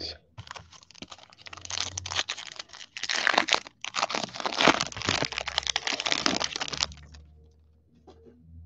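Foil wrapper of an 11/12 Elite hockey card pack being torn open and crinkled by hand: dense crackling for about six and a half seconds, with a short pause near the middle.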